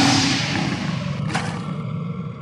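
Logo-sting sound effect: a big-cat roar that is loudest at the start and fades away, with a short sharp claw-slash swipe about a second and a half in.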